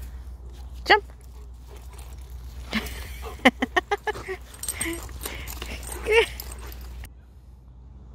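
A yellow Labrador retriever whining and yipping in short high cries, several in quick succession about three seconds in and one falling cry near the end, while it is urged to jump a low wooden rail.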